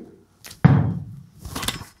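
A volleyball smacks hard on the floor once, a sharp single hit about half a second in, and bounces high. About a second later there is a lighter slap as it is caught in both hands overhead.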